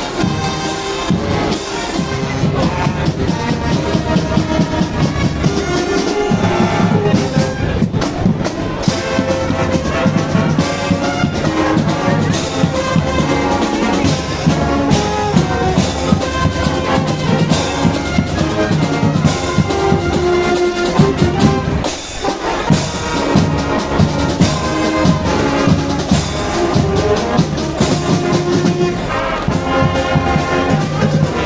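Brazilian marching band (banda marcial) playing live, a full brass section of trumpets, trombones and sousaphones over marching drums. The music is loud and continuous, with held brass chords over a steady beat.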